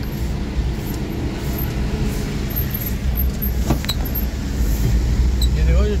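Cabin noise of a car on the move, heard from inside: a steady low engine and road rumble, with one sharp click a little past halfway.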